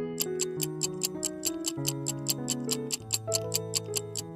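Countdown-timer clock ticking sound effect: a fast, even run of sharp ticks, over background music of held notes.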